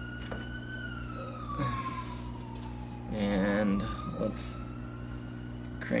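A siren wailing: one slow fall in pitch, then about three seconds in it starts over and climbs again. A steady low hum runs underneath.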